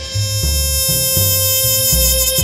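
Jazz trumpet holding one long, bright note over a rhythm section whose low notes change every half second or so.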